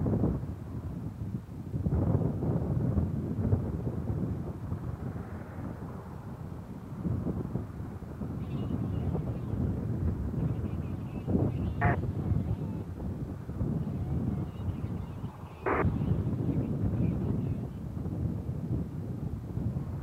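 Wind rumbling on an outdoor microphone: an uneven low noise, with two short crackles about twelve seconds in and again about four seconds later.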